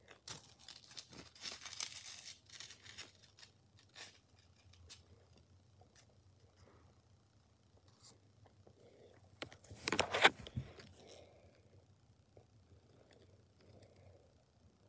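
Crinkly rustling and crackling of packaging being handled close by, in irregular bursts, with the loudest burst about ten seconds in.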